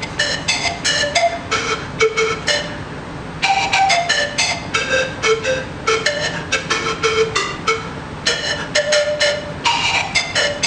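Bamboo zampoña (Andean panpipe) tuned in D minor, played solo: a quick melody of short, breathy notes, with a brief pause about three seconds in.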